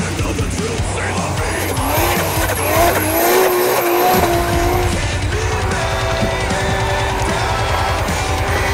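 Toyota Supra drift car's engine revving hard as the car slides through snow. The engine note climbs and falls several times in the first half, then holds a steadier pitch. Heavy rock music plays with it.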